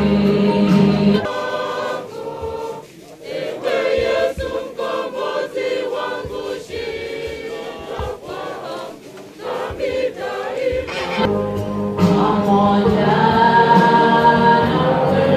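A group of voices singing together in chorus, in a gospel hymn style. The sound of the singing changes abruptly about a second in and again near the end.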